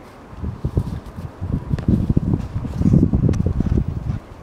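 Wind buffeting the microphone: a ragged, gusting low rumble that grows louder in the second half, with a couple of faint sharp clicks.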